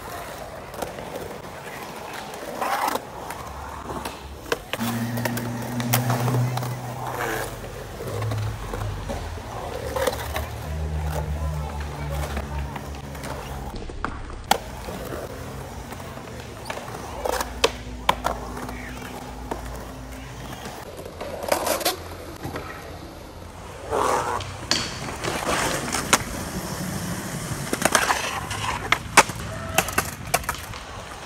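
Skateboard riding in a concrete bowl: urethane wheels rolling on concrete, with repeated sharp clacks and knocks from the board and trucks on the transitions and coping. Low bass notes that step in pitch sound through the middle stretch.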